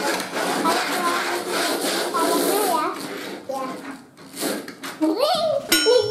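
Young children's voices, talking and exclaiming.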